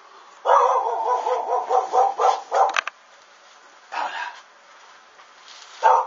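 A dog barking: a drawn-out call that breaks into a quick run of barks, then a single bark about four seconds in and another near the end.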